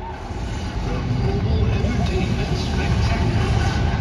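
A deep, booming rumble from the stadium's loudspeakers swells up within the first second and holds loud, echoing through the open-air stadium.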